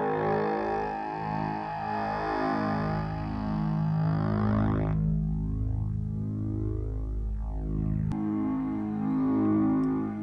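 Keen Association 268e Graphic Waveform Generator oscillator sounding a steady-pitched synthesizer tone. Its timbre keeps shifting as incoming CV from an envelope/LFO redraws its wave shape. The tone turns duller about halfway through and brightens again near the end.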